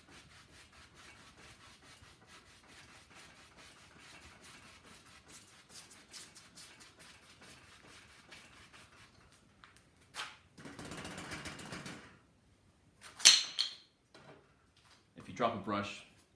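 Bristle brush scrubbing oil paint on a stretched canvas in quick short criss-cross strokes, a faint rapid rubbing as the wet sky colours are blended. After about ten seconds the brushing stops; there is a brief stretch of handling noise and then a single sharp knock, the loudest sound.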